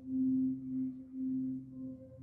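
Sustained singing bowl tone, one steady pitch with fainter overtones above it, wavering slowly in loudness.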